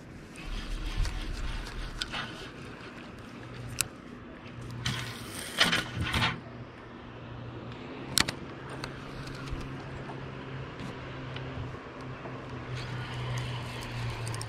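Spinning reel being worked by hand, with scattered sharp clicks and a couple of short rushes of noise about five to six seconds in, over a steady low hum.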